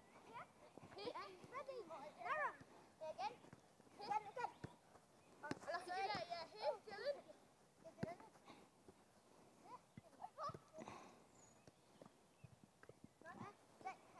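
Faint, distant children's voices calling and shouting to each other during a football game, with a couple of sharp knocks of the ball being kicked.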